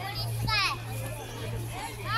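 Children's high-pitched voices calling out among people talking in an open space, with one loud shout about half a second in, over a steady low hum.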